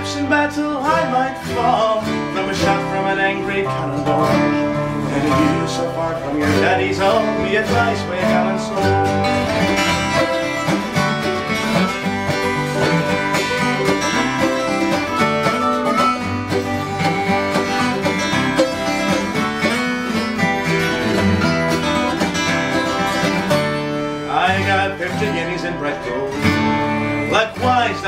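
Instrumental break by an acoustic string band: strummed acoustic guitars with a lap-played slide guitar, in a lilting folk-ballad rhythm.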